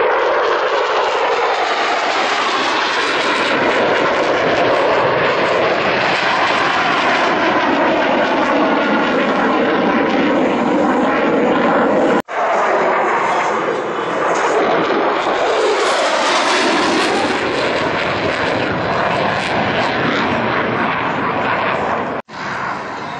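F-16 Fighting Falcon jet engine roaring loudly through a low flyby, with a sweeping, phasing swirl to the sound as the jet passes. The roar breaks off abruptly about twelve seconds in and picks up again at once on another pass.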